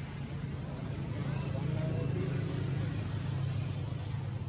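Steady low engine rumble of a motor vehicle, growing a little louder about a second in, with faint distant voices.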